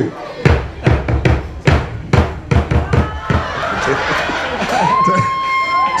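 Drums struck about a dozen times over three seconds in an uneven beat: an audience volunteer trying to copy the drummer's beat and not yet getting it. The audience reacts with crowd noise after the strikes.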